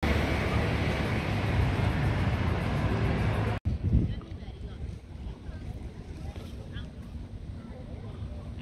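Outdoor street ambience with a loud, even rush of wind on the microphone for about three and a half seconds. It cuts off suddenly into a quieter open-air background with a few faint scattered sounds.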